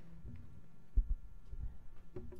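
Low thuds on the lectern microphone: one sharp thump about a second in, then a few softer bumps, as pages are handled at the lectern.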